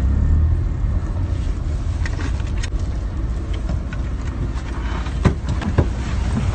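A car's engine and road rumble heard from inside the cabin as it drives slowly, a steady low rumble. A few short knocks come near the end.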